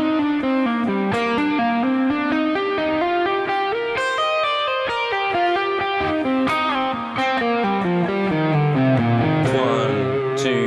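Electric guitar playing a legato single-note lick at a slowed practice tempo, blending two-note-per-string pentatonic and three-note-per-string major-scale shapes. It rises in the middle, then cascades down to a low note held near the end.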